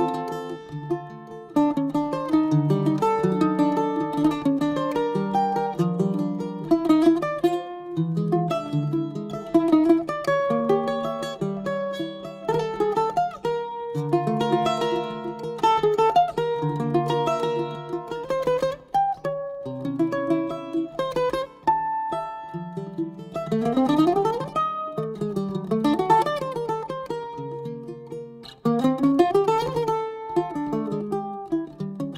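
Instrumental trio music led by a ten-string Brazilian mandolin (bandolim) playing a busy plucked melody over low bass notes. There are quick upward runs about two-thirds of the way in and again near the end.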